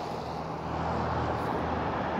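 Road traffic noise: a steady low engine hum with passing-car rumble.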